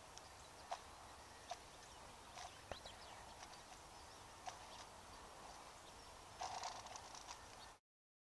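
Pond ice under a person standing on it, giving scattered sharp clicks and cracks over a faint background, with a quick run of them about six and a half seconds in. The sound cuts off suddenly just before the end.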